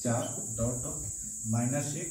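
A man speaking in short clipped words about twice a second, over a continuous high-pitched trill of crickets.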